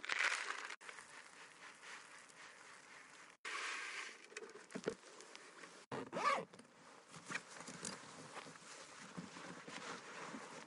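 Rustling, scraping noises in uneven bursts, cutting out abruptly three times.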